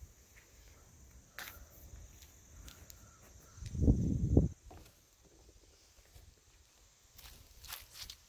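Footsteps on a woodland dirt path with scattered light crackles, and a loud low rumble lasting under a second about halfway through.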